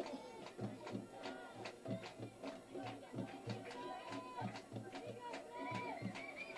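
Faint crowd sound from the stands: voices chanting and calling over a steady drum beat, about three beats a second.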